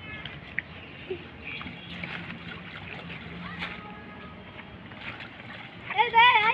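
Low water sloshing and swishing as a triangular bamboo push net is worked through floating water hyacinth, with faint voices in the distance.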